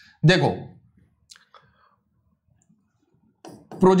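A few faint, short clicks about a second into a quiet pause, from a stylus tapping on an interactive display screen.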